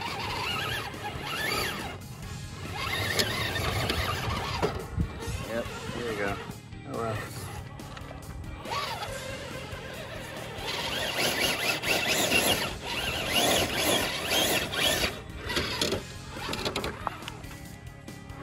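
Background music with a wavering singing voice.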